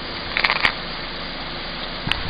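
A car's engine running quietly as the car rolls slowly over gravel, with a few short sharp noises about half a second in.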